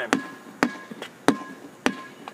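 A rubber playground ball bouncing on an outdoor court during a dribbling drill: four bounces about 0.6 s apart, each ringing briefly.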